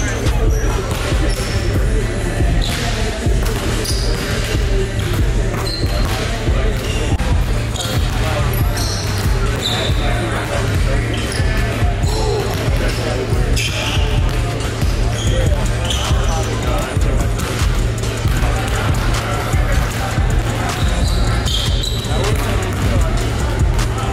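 Basketballs bouncing on a hardwood gym floor, many dribbles in quick succession, over background music with a steady low bass line.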